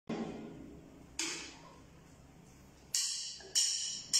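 Sparse strikes on a drum kit: a low drum hit, then three cymbal strikes spaced about a second or more apart, each ringing away.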